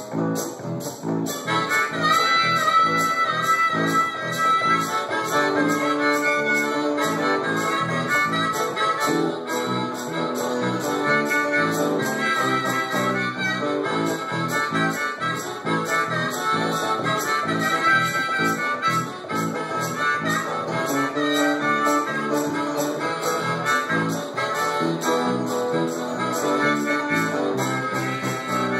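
Live blues instrumental break: a harmonica solo of held notes over a strummed acoustic guitar, with the harmonica coming in about two seconds in.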